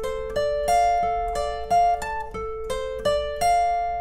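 Acoustic guitar picked note by note in a slow arpeggio over a D minor chord shape, about three notes a second, with one note ringing on under the others. The last note is left to ring out near the end.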